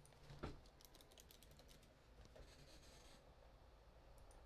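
Faint typing on a computer keyboard: a quick run of keystrokes about a second in, then a second short run a couple of seconds later.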